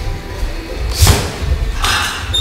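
Music playing in a boxing gym, with a thud about a second in and another sharper hit near the end from the sparring in the ring.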